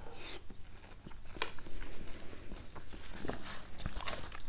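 Watermelon being bitten and chewed, with a few short sharp clicks.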